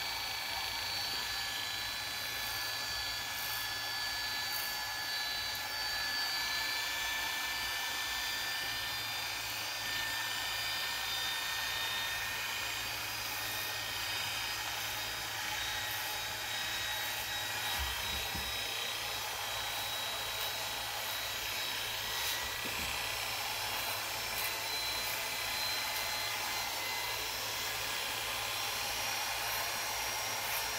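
Electric hair clipper running steadily while cutting hair, a motor whine whose pitch drifts slightly.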